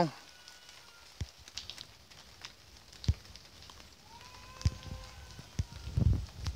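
Quiet background with scattered faint clicks and crackles, and a faint held tone from about four seconds in.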